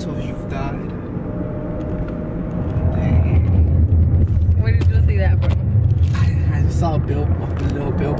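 Car interior noise while driving: a steady low rumble of engine and road that gets louder about three seconds in and eases off toward the end, with brief snatches of voices over it.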